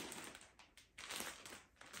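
Plastic clip-lock bags packed with clothes rustling and crinkling faintly as they are handled, in two short spells.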